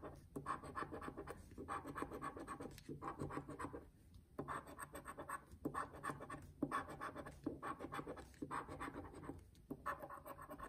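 A round scratcher token rubbing rapidly across a scratch-off lottery ticket, scraping off the coating in short runs of strokes with brief pauses between them, the longest pause about four seconds in.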